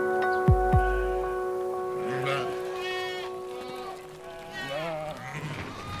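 A held music chord fades out over the first few seconds, with two deep booms near the start. From about two seconds in, a mixed flock of sheep and goats bleats: several wavering calls that grow louder toward the end.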